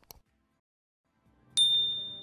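Subscribe-animation sound effects: a faint mouse click at the start, then a bright bell ding about one and a half seconds in as the notification bell is clicked, its single high tone ringing down.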